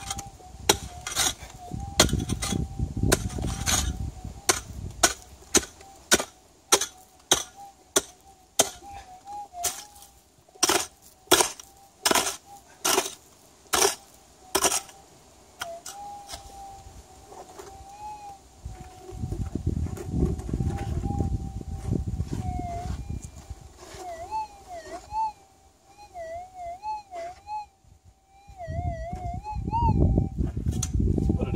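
A small pick strikes wet gravelly soil and stones again and again, roughly two sharp hits a second, for about the first fifteen seconds. Under the hits runs the steady threshold tone of a Minelab GPZ7000 gold detector. In the last few seconds, as the coil is swept over the hole, the tone warbles and wavers: the detector is responding to the buried target.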